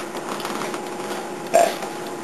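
Clothing rustling and scraping as tight pants are tugged up over jeans, with one short throaty vocal sound, like a grunt or burp, about three-quarters of the way through.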